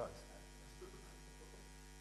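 Faint, steady electrical mains hum with several evenly spaced overtones, left alone once the last spoken word ends right at the start.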